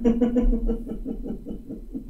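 A woman chuckling: a run of quick laughing pulses at one steady pitch that dies away after about a second and a half.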